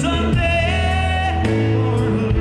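Live rock band playing a slow song. A man sings held, wavering vocal lines over electric guitar, bass and drums.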